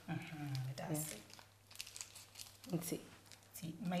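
Brief bits of women's speech, with short crinkling and handling noises in the pauses between them.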